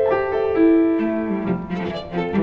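Piano trio playing classical chamber music: a violin holds long bowed notes over piano, with a lower held note coming in about a second in.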